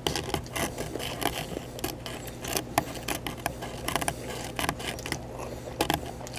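Paper sandwich wrapper crinkling and rustling as the bagel is handled, with irregular small clicks and scrapes, over a faint steady low hum.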